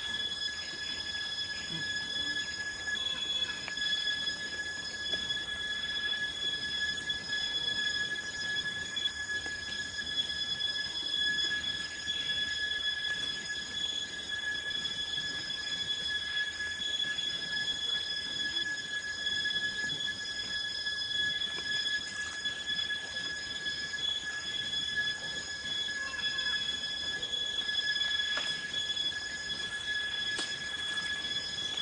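A steady high-pitched whine held at one pitch with overtones, unchanging throughout, with faint soft ticks and rustles beneath.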